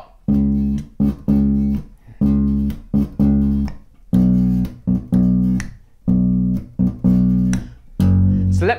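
Solo electric bass playing the standard rock groove with no backing: per bar, three notes, on beat one, a short one halfway through beat two, and one on beat three. It repeats four times at a steady tempo, about two seconds to a bar.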